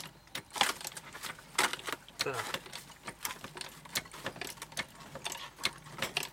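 A 5-tonne hydraulic bottle jack pumped by its long handle to lift a wooden shed: a string of irregular clicks, knocks and creaks from the jack and the loaded shed frame, which gives a crunch as it rises.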